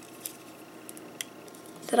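A few faint, sharp plastic clicks as a clear plastic display-stand arm is handled and pushed into the holes in the back of a plastic action figure. A voice begins right at the end.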